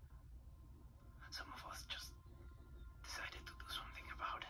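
Two short bursts of quiet, breathy voice, one about a second in and one near the end, over a low steady rumble.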